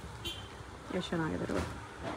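A voice says a short word about a second in, over a steady low background hum.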